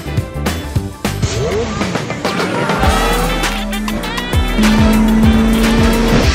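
Upbeat music, with the engine of a Formula One-style racing car from a video game heard over it in the second half.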